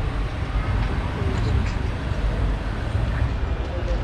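A BMW i8 sports car rolling slowly close by with a low, steady rumble, and people talking faintly in the background.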